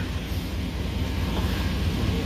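Pickup truck engine running at idle, a steady low rumble.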